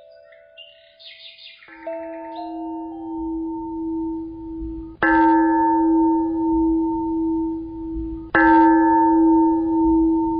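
A deep-toned bell struck three times about three seconds apart, each stroke ringing on with a sustained hum into the next. The second and third strokes are the loudest, and a few faint high chimes come before the first.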